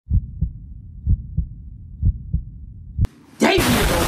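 Heartbeat sound effect: three low double thumps (lub-dub) about a second apart. After a click and a short drop, a loud harsh burst of noise comes in near the end.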